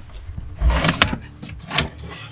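Furniture drawers sliding open on their runners, with a low rumble and a couple of sharp knocks as they are pulled out and pushed back.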